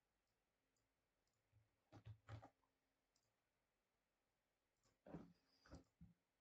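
Faint computer mouse clicks: two about two seconds in and two more near the end, over near silence.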